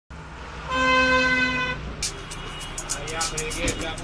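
A vehicle horn sounds one steady toot of about a second over a low rumble. About two seconds in, music starts with a quick ticking beat.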